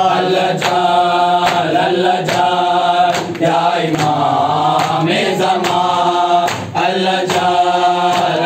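A group of men chanting a noha (Shia lament) in unison, with a steady beat of open-hand chest strikes (matam) keeping time under the voices.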